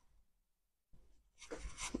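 Sheets of printed paper rustling and sliding over a desktop as they are laid out, starting about one and a half seconds in.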